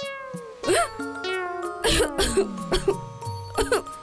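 Cartoon soundtrack: playful music with held notes and a long falling slide, over several short breathy vocal bursts, the loudest about two seconds in.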